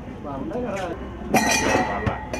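Steel tumblers clattering and ringing, struck in a ball-throwing stall game: one sudden loud metallic crash about a second and a half in, over background chatter.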